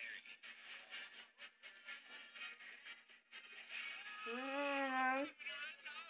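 Song from a film soundtrack: a singer's voice over a steady accompaniment, holding one long note about four seconds in.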